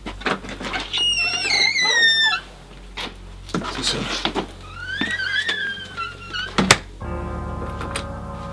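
A door's hinges squeal as it swings open and squeal again as it is pushed shut, then the door closes with a sharp thud. A low, sustained music drone begins right after.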